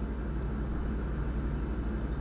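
Steady low hum with faint background hiss: the room tone of the recording, with no other event.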